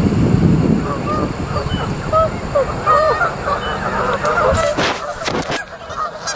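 Canada geese honking, many short overlapping calls from a flock on the water. A low rumble at the start and a few sharp clicks near the end.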